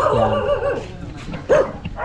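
A dog barking: a longer, wavering bark at the start and a short single bark about a second and a half in.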